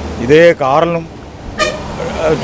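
A vehicle horn gives one short, sharp toot about one and a half seconds in, over street traffic.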